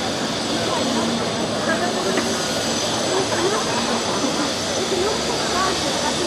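Crowd babble: many people talking at once, a steady wash of overlapping voices with no single voice standing out.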